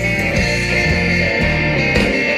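Live rock band playing an instrumental passage, guitar-led over bass and drums, recorded straight from the soundboard.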